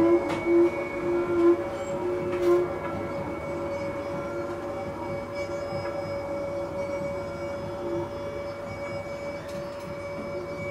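Experimental jazz improvisation: clarinet, saxophone and bowed double basses hold long overlapping tones. The playing thins out over the first few seconds and settles into a quieter, steady drone.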